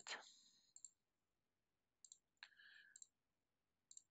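Faint computer mouse clicks, a few single clicks spread out with near silence between them.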